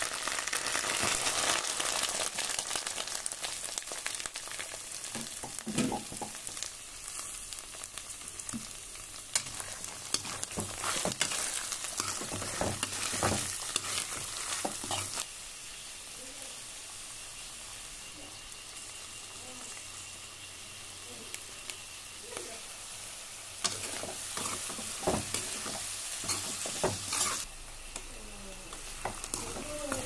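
Chopped onion, green chilli and sliced vegetables sizzling in hot oil in a frying pan, with a metal spatula stirring and scraping against the pan in clusters of clicks and knocks. The sizzle is loudest in the first few seconds and softer later.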